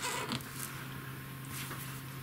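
A felt-tip pen briefly scratching on paper in the first half-second, over a steady low hum and faint hiss.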